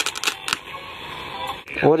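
A quick run of sharp clicks, then a faint steady hiss, with a voice starting near the end.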